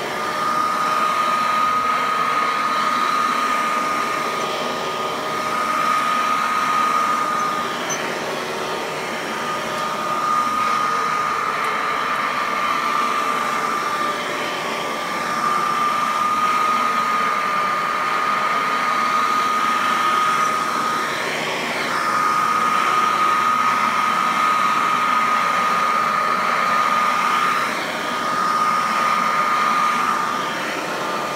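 Hoover Model 28 upright vacuum cleaner running on carpet: a steady high-pitched motor whine over a rush of air, its loudness swelling and dipping as the cleaner is pushed back and forth.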